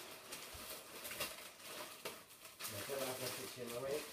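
Light, scattered rustles of plastic gift packaging being handled. In the last second and a half comes a soft, wavering wordless voice.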